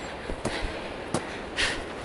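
A hiker breathing hard while climbing a steep slope under a heavy pack, out of breath, with one sharp exhale about one and a half seconds in and a couple of faint clicks.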